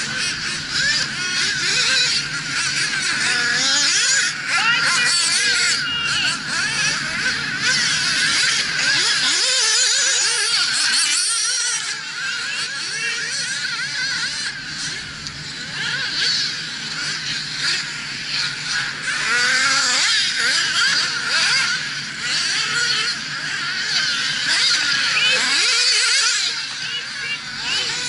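Several 1/8-scale nitro RC buggies racing, their small two-stroke glow engines revving up and down in high-pitched, overlapping whines as they accelerate and brake around the track. The sound briefly thins out about ten seconds in, then picks up again.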